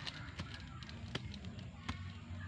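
Black plastic seedling bag being handled as a soil-wrapped coffee seedling is pushed into it: four short sharp crackles spread over two seconds, over a steady low hum.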